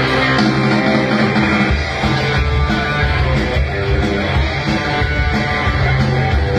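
Live rock band playing loud and steady: electric guitars, bass and drums, with the guitars to the fore and no vocals in this stretch.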